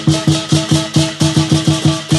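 Lion dance music: a drum beating a fast, driving rhythm of about three to four strokes a second, with cymbals clashing on top.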